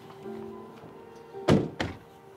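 Two car doors of a Dodge truck slammed shut one right after the other, the first the louder, over background music.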